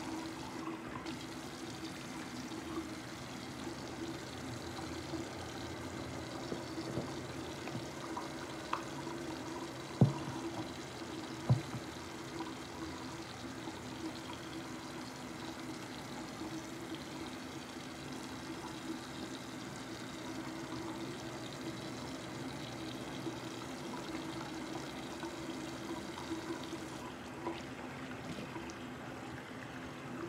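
Tap water running steadily into a bathroom sink, with two sharp knocks about a second and a half apart near the middle.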